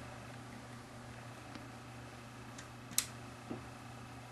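Quiet room tone: a steady low hum with a few faint, sharp clicks, the loudest about three seconds in.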